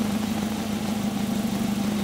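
A nearby engine idling: a steady, even hum with a strong low drone and a fine regular pulse underneath, unchanging throughout.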